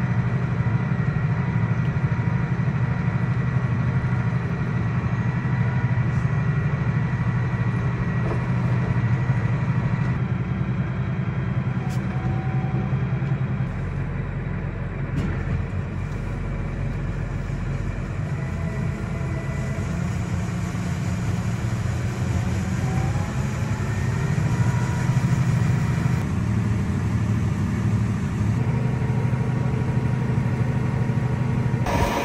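John Deere 8345R tractor's diesel engine running steadily, heard from inside the cab as a low drone, while the grain cart's auger unloads corn into a semi trailer.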